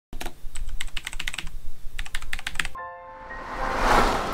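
Typing sound effect: two quick runs of key clicks, then a single bell-like ding about three seconds in that rings away, and a swelling whoosh near the end.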